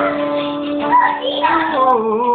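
Acoustic guitar played along with singing: a long held sung note that wavers and then slides down to a lower held note near the end.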